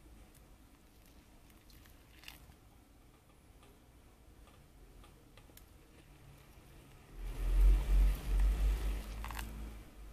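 Hot water poured from a gooseneck kettle onto ground coffee in a paper pour-over filter. It is faint at first with a few small clicks, then swells to its loudest for about two seconds starting some seven seconds in, with a deep rumble under the pour.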